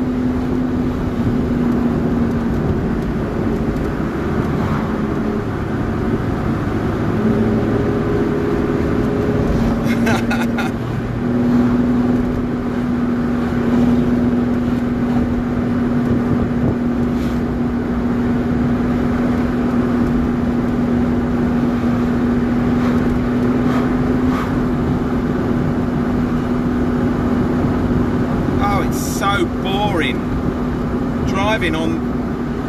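Car engine and road noise heard from inside the cabin while driving, a steady drone at an even pitch. The engine note shifts and dips briefly about a third of the way in, then holds steady again.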